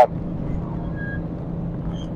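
Steady low hum of background road traffic, with no distinct events standing out.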